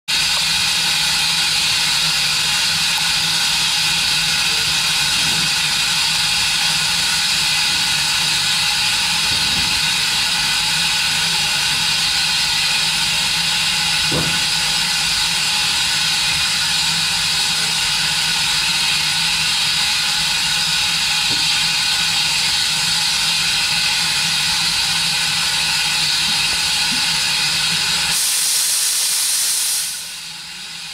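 A small steam locomotive letting off steam in a steady, loud hiss. In the last two seconds the hiss turns higher and thinner, then falls away.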